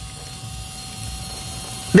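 Steady hiss of air leaking from a car tyre that has been driven flat until it overheated.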